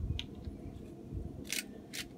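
Small handling sounds while a lemon-mustard dressing is made in a small bowl: a light click, then two short hissing shakes near the end, typical of salt being shaken in, over a faint steady hum.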